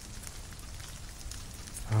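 Steady rain ambience under the roleplay: an even hiss of falling rain with a low rumble and scattered faint drop ticks.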